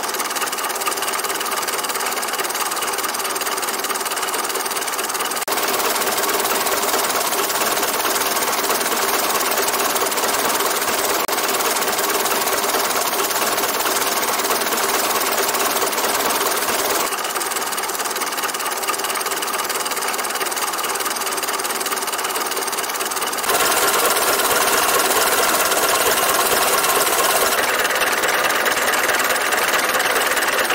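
1904 Panhard et Levassor's 3800cc four-cylinder engine running steadily at a standstill, heard close up in the engine bay. Its loudness steps up and down a few times.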